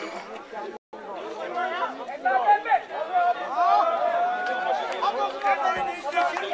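A crowd of people talking over one another outdoors, the voices growing louder after about two seconds. The sound cuts out completely for a moment just under a second in.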